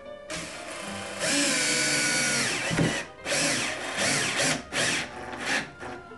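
Cordless drill/driver driving a 1-5/8 inch wood screw into pine, its motor whining in several bursts with short pauses as the screw goes in.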